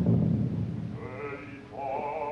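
Live opera recording: an orchestra-and-chorus passage ends on a loud accent and dies away. About a second later a solo operatic voice comes in, holding a note with a wide vibrato.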